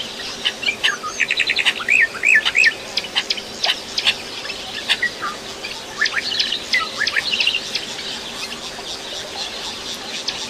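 Many small birds chirping and calling in short overlapping notes, busiest in the first few seconds with a quick run of rising-and-falling whistled notes, then sparser toward the end.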